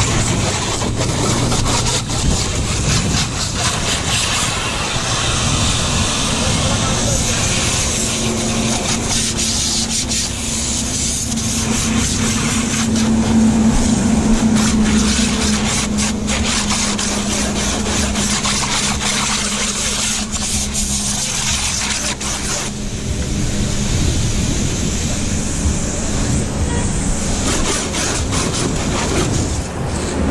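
A jet of water from a hose spraying against a car's body panels and rear window, a steady hiss, over a steady low engine hum that swells a little midway.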